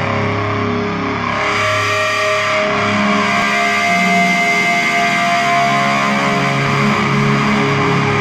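Grindcore music: distorted electric guitar holding ringing notes over a steady low drone, loud and unbroken.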